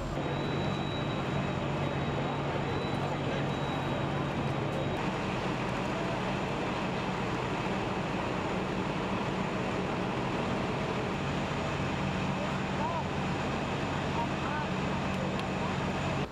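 Steady engine hum of fire trucks running at a fire scene, with indistinct voices in the background. A faint high whine sits over it for the first few seconds.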